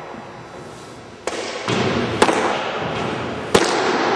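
Sharp, echoing pops of a thrown baseball smacking into a catcher's mitt in a gym, twice, a little over a second apart, after a rise in echoing gym noise about a second in.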